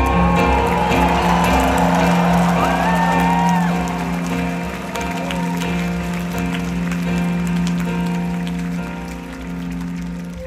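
Grand piano holding sustained chords while a concert audience applauds and cheers over the first few seconds. The applause then dies away and the piano carries on softer.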